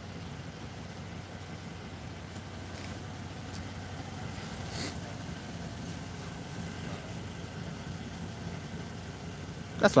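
A vehicle engine idling with a steady low hum.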